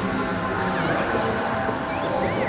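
Experimental ambient soundscape: steady droning tones over a dense noisy bed, with a few short high screeching glides.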